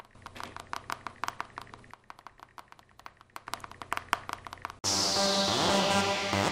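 Quick, irregular clicks of a smartphone's keyboard being tapped as a message is typed, several a second for nearly five seconds. Then upbeat electronic music starts suddenly and loud near the end.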